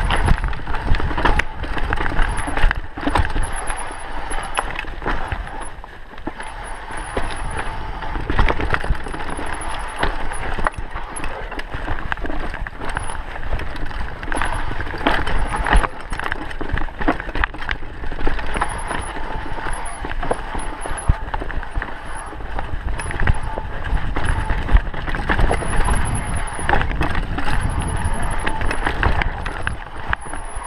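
Mountain bike riding fast down a rough dirt singletrack: continuous rattle and clatter of the bike over roots and rocks with tyre noise on dirt, dense with sharp knocks, over a steady low rumble.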